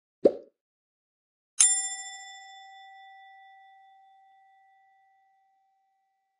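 A short click-like pop, then a single bright bell ding that rings on and fades away over about three seconds: sound effects of an animated subscribe-button and notification-bell end screen.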